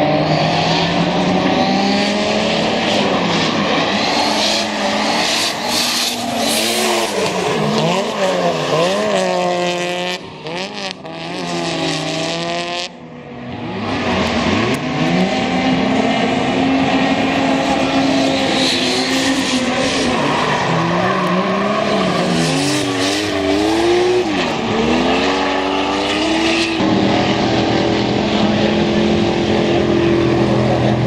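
Two drift cars, one a Nissan Silvia S15, revving hard in a tandem drift, engine pitch repeatedly rising and falling with throttle stabs and gear changes over tyre squeal. About ten seconds in the engines drop back briefly before revving again, and near the end one engine settles to a steady low-rpm note.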